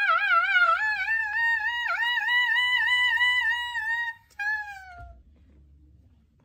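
A man's long, high falsetto wail with a quick wobble in pitch, slowly rising over about four seconds. It breaks off and is followed by a short falling cry about a second later.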